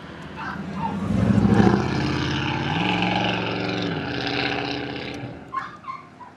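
A motor vehicle's engine close by: it grows loud about a second in, its pitch rises briefly in the middle, and it fades away after about five seconds.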